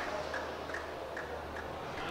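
Quiet indoor racquetball court between rallies: a low steady hum with three faint, short ticks spread across it.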